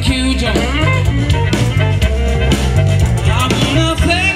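Live electric blues band: an amplified harmonica played into a microphone held in cupped hands, its notes bending and wavering, over electric guitar and drum kit.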